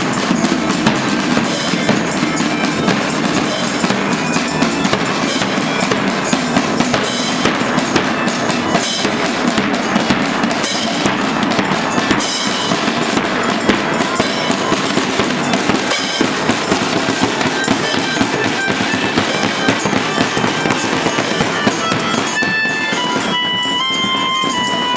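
Marching band playing: bass drum and snare drums beating densely, with melodicas joining in held notes that stand out clearly near the end.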